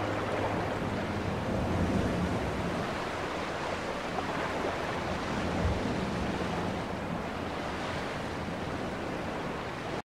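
Steady rushing noise, with a low hum that fades over the first couple of seconds.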